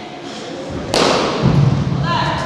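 Wushu performer's feet striking a carpeted floor: a sharp crack about a second in, then a heavy thud as the performer drops into a low stance.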